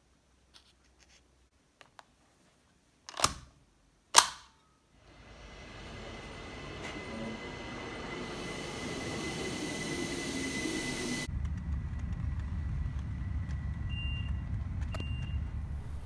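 A few faint ticks, then two sharp clicks about a second apart. Then an electric commuter train pulls into a station, its noise swelling and holding with a thin steady whine, until it gives way abruptly to a lower steady rumble near the end.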